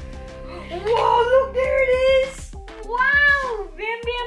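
A baby's high-pitched squealing vocalizations, two long calls sliding up and down in pitch, over background music.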